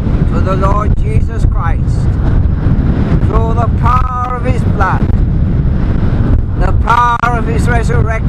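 Strong wind buffeting the microphone: a loud, continuous rumble under a man's voice speaking in short bursts.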